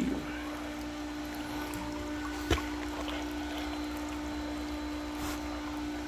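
Freshly primed pump running with a steady hum and a faint wash of water, before full flow has come through. A single sharp click about two and a half seconds in, and a fainter one near the end.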